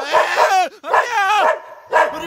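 A dog whining in two drawn-out cries, each wavering and then falling in pitch.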